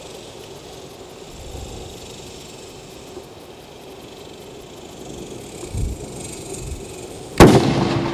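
A single loud shot from a 6.5 Creedmoor Howa 1500 bolt-action rifle near the end, a sharp crack with a brief ringing after it.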